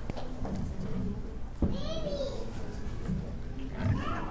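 Low murmur of background voices in a hall, with a short high voice that rises and falls about two seconds in and a single click just before it.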